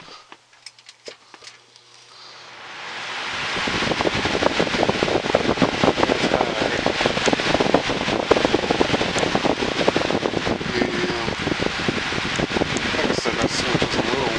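Galaxy box fan starting up on its newly replaced switch: a few clicks in near-quiet, then the rush of air builds over about two seconds as the blades spin up, and the fan runs steadily.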